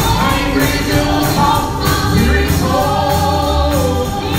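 Gospel song sung by a small group of voices in harmony over band accompaniment with a steady beat.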